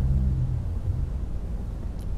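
A pause between a man's sentences, filled by a steady low rumble of background noise.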